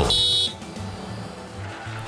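A short, high-pitched horn blast of about half a second from the excavator: the signal to the hauler operator that the body is full. Soft background music with a low pulse follows.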